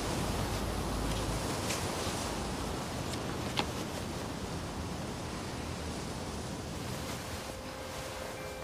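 Steady hiss of outdoor ambience with a faint click about three and a half seconds in; soft held music notes come in near the end.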